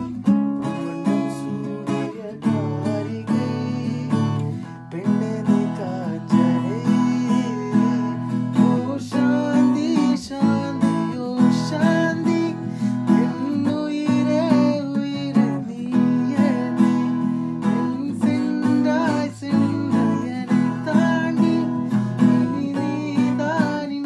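Acoustic guitar strummed steadily, with a man singing along to it.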